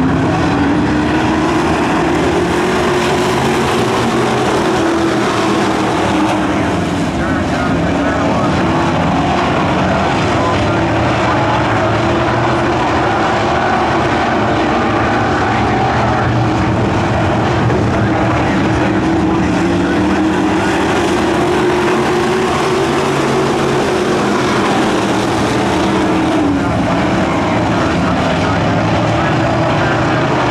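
A field of street stock race cars running together on a dirt oval, their engines climbing in pitch near the start as the pack accelerates, then rising and falling as they throttle through the turns.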